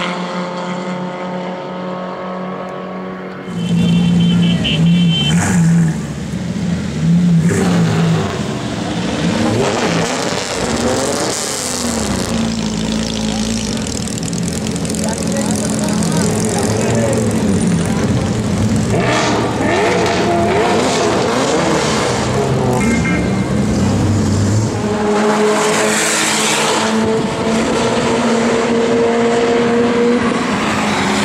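Several performance-car engines in short clips cut one after another, loud exhaust notes revving and accelerating, their pitch climbing and falling as the cars pull away and pass.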